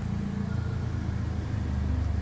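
Steady low rumble of motor-vehicle traffic in the street.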